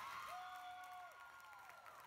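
Faint crowd noise from spectators in a school gymnasium during a volleyball rally, with a couple of steady held tones lasting about a second.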